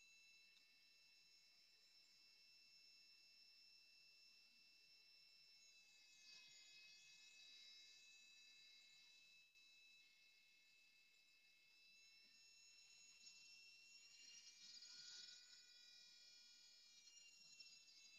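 Near silence, with a faint steady high-pitched whine.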